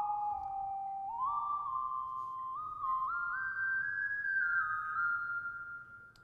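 Moog One polyphonic synthesizer playing a factory preset with its reverb switched on: a legato melody of pure, whistle-like tones, gliding briefly between held notes and climbing overall.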